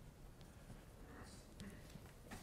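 Near silence: room tone, with a couple of faint ticks.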